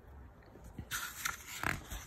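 Faint rustle and soft handling knocks of a hardcover picture book's page being turned, with a short thump near the end.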